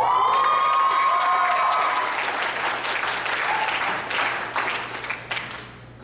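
Audience applauding, with a few cheers as it breaks out. The applause starts suddenly, then thins into scattered claps and fades by the end.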